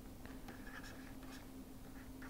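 Faint scratching and tapping of a stylus writing on a pen tablet, in short strokes over a low steady hum.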